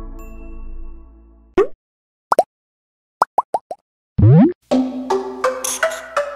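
Logo-intro sound effects: a fading synth chord, then short blips that rise in pitch (one, then two, then four in quick succession), and a louder rising swoop about four seconds in. Upbeat music with a light percussive beat starts just after.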